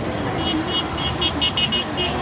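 Street traffic with a car passing close by over a crowd's background noise, and a rapid run of short, high-pitched toots from about half a second in.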